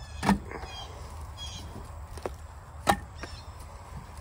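Split hardwood firewood (oak and cherry) being handled and stacked, pieces knocking against each other in a few sharp wooden clunks, the loudest about a third of a second in and just before three seconds.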